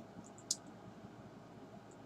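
Faint room hiss with a single short click about half a second in, a computer mouse being clicked.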